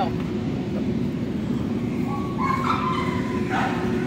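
Dogs barking over a steady low rumble, with a short run of higher-pitched calls a little past halfway.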